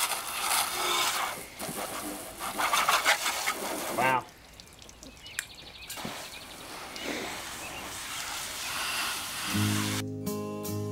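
A garden hose spray nozzle sprays water onto a car's rear window louvers, a steady hiss and splatter that drops away sharply about four seconds in and is quieter after. Acoustic guitar music begins near the end.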